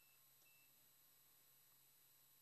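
Near silence: a faint steady hiss from the broadcast feed, with two very faint short high beeps in the first half second.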